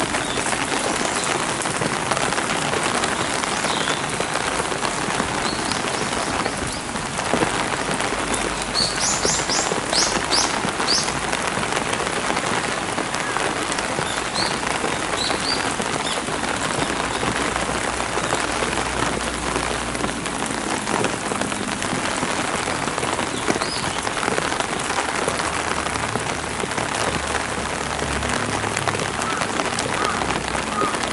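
Steady rain falling on stone paving and gravel. A quick run of high bird chirps comes about a third of the way in.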